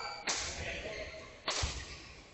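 Badminton rackets striking the shuttlecock during a fast rally: two sharp hits about a second and a quarter apart, each with a short echo.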